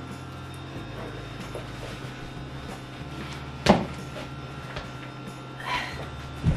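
A black thigh-high stiletto boot being pulled on and handled: mostly quiet, with one sharp knock about two-thirds of the way in.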